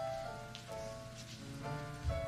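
Instrumental music from a theatre pit band: a run of held notes and chords that change about every half-second, over a faint steady hiss.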